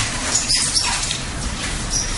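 Forearms slapping and brushing against each other in fast Wing Chun gor sau exchanges, with several short high squeaks.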